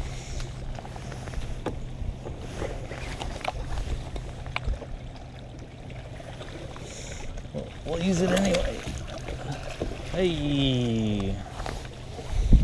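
A steady low motor hum for about the first half, then two wordless vocal exclamations, the second a long falling 'whoa', while a hooked bass is netted into the boat. Scattered light clicks and knocks of tackle and net on the boat.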